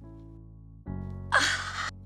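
Soft background music holds a sustained chord, which changes a little under a second in. Then a woman gives a loud, sharp gasp lasting about half a second.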